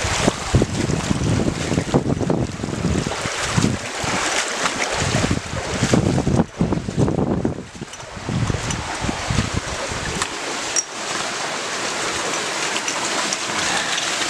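A shallow stony stream rushing, with uneven low rumbles and splashes through the first ten seconds of wading. It then settles into a steady rush of water pouring out of concrete culvert pipes.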